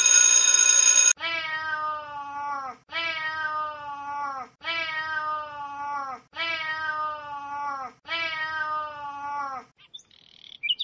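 A loud steady tone with many overtones for about the first second, then a cat meowing six times in a row. Each meow is long, drawn out and drops in pitch at its end, and all six have the same shape, evenly spaced about a second and a half apart.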